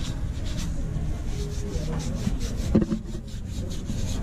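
Cloth rag scrubbing the sole edge of a white sneaker in quick repeated strokes during a cleaning, with one louder knock about three seconds in.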